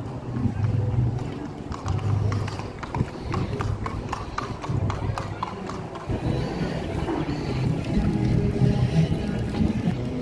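A horse's hooves clip-clopping on pavement, a run of clops in the first half, over background music and voices.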